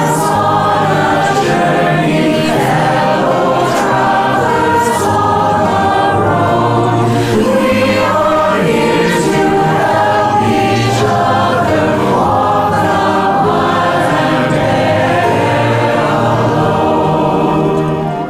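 A large choir of many separately recorded voices singing a hymn together over an instrumental accompaniment track.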